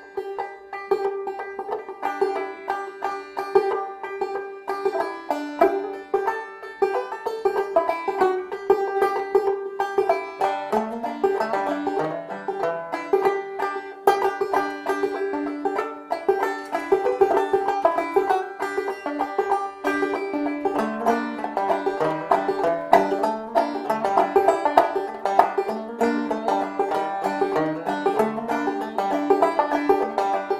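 Five-string banjo played clawhammer style: a continuous run of quick plucked notes, the strings left to ring, over a steady high drone note. Lower bass notes join in about ten seconds in.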